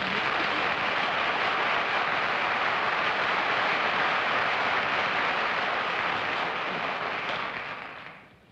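Studio audience applauding, with some laughter at the start; the applause holds steady, then dies away near the end.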